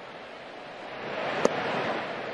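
Ballpark crowd murmur swelling as the pitch comes in, with a single sharp pop about one and a half seconds in as a 96 mph sinker smacks into the catcher's mitt.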